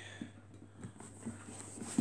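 Faint handling noise as a pig mask and a phone are moved about in the hands: soft rustles and light knocks, over a steady low hum.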